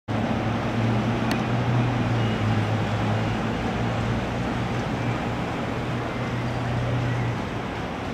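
Steady outdoor noise with a low, even hum, like an idling engine or generator, which stops shortly before the end. A single sharp click comes about a second in.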